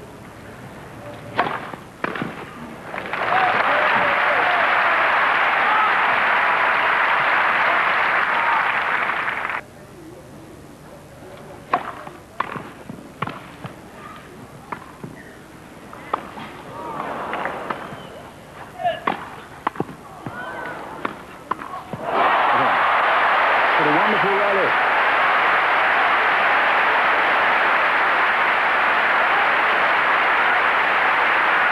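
Tennis balls struck by rackets on a grass court: a serve about a second and a half in, then the crowd applauding for about six seconds. A second point follows, with a string of sharp racket hits, and the crowd applauds again for the last eight seconds.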